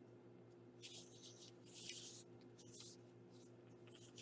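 Faint rustling of a paper card being slid and pressed flat by hand, in a few soft brushes between about one and three and a half seconds in, over a low steady hum.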